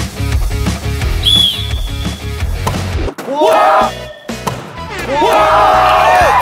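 Background rock music with a driving beat cuts off about three seconds in, then a group of young men shouts and cheers loudly, in two outbursts.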